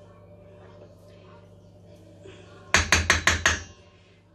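A metal teaspoon tapped quickly against the rim of a stainless steel mixing bowl, about six sharp, ringing taps in under a second near the end, knocking thick vanilla essence off the spoon.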